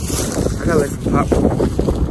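Wind buffeting a phone microphone: a loud, rough low rumble. There are brief voice sounds a little under a second in and again at about a second.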